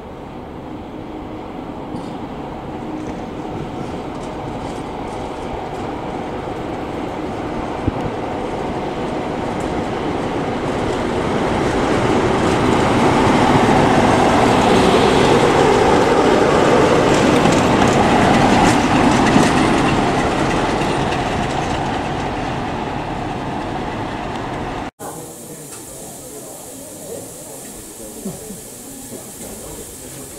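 A West Coast Railways Class 47 diesel locomotive running past with its train, the engine and wheels on the rails growing louder to a peak about halfway through, then fading. After a sudden cut near the end, a standing steam locomotive hisses softly as steam escapes around its cylinders.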